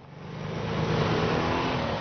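Motorcycle and scooter engines accelerating as a group rides off, the engine note rising in loudness over the first second and then holding steady.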